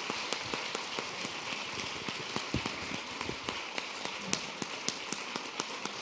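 An audience applauding steadily, many hands clapping in a dense patter.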